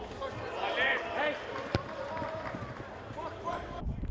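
Pitch-side sound of a football match: players' raised voices and shouts, with a single sharp knock a little under two seconds in. The sound cuts off abruptly just before the end.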